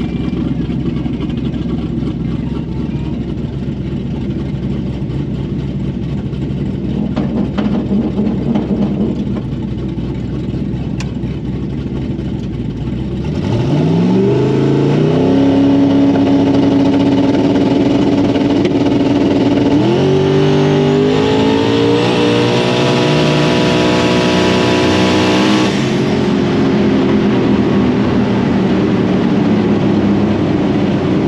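Race car engine heard from inside the cockpit, idling with a steady low rumble. About 13 seconds in it goes to full throttle and the car launches down the strip, its pitch climbing and then holding. The engine surges higher again about 20 seconds in and drops off near 26 seconds as the throttle is lifted.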